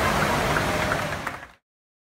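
Large fountain jets spraying and falling back into the lake: a steady rush of water noise with a low rumble, which fades away about a second in and cuts to silence about a second and a half in.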